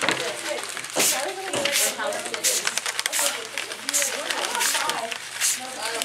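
Hand-pumped trigger spray bottle squirting water onto crumpled paper: a run of short hissing squirts, about one every half second to second. Children talk in the background.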